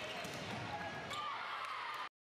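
A volleyball being struck during a rally, with a few sharp hits echoing in a large gym over the overlapping voices of players calling and chatting.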